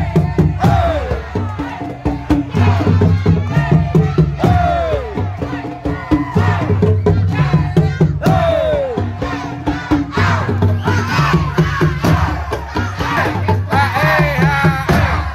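Beduk drum ensemble playing a fast, dense rhythm, with a group of performers shouting long calls that slide down in pitch every few seconds, over crowd noise.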